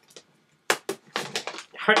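Rubber balloon being handled and knotted by hand: a quick run of short, sharp clicks and snaps, about five a second, starting just under a second in.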